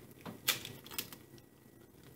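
An egg being cracked open over a saucepan: a few light clicks of eggshell breaking, the clearest about half a second and one second in.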